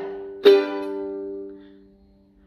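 Mahalo ukulele: one chord strummed about half a second in, ringing out and fading away to almost nothing.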